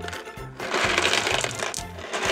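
Contents of a clear plastic jar tipped out onto carpet: small balls, larger hollow plastic balls and a plastic Play-Doh tub clattering and rattling out in one rush lasting about a second. Background music plays underneath.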